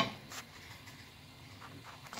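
A single sharp click at the very start, the plastic stirring spoon knocking against the frying pan. After it, only a faint, quiet background with a few soft ticks from the pan.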